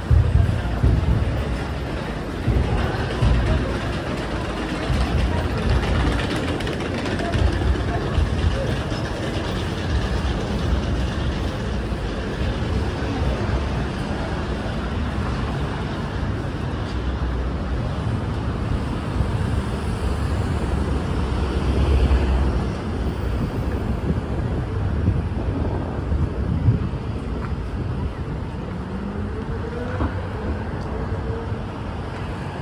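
Busy city street ambience: a steady wash of road traffic with the indistinct voices of passers-by.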